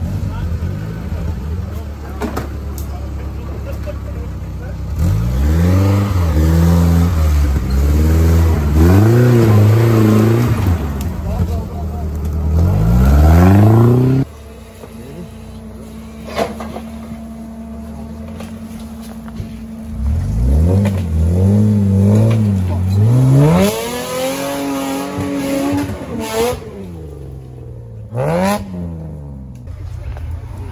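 An off-road vehicle's engine revving hard in repeated surges, rising and falling, as it claws up a steep muddy slope. The sound drops off abruptly about halfway through, then the revving surges pick up again.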